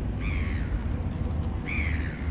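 A bird calling: two short, harsh calls about a second and a half apart, each falling in pitch, over a steady low rumble.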